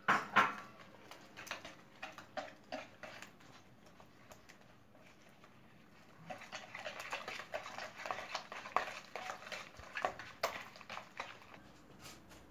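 Metal wire whisk beating eggs, sugar and lumps of butter in a plastic bowl: scattered taps and clinks at first, then a fast, steady run of whisk strokes from about halfway through.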